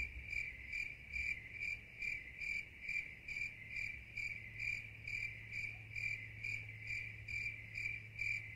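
Cricket chirping sound effect: evenly spaced chirps about two a second, over a faint steady low hum.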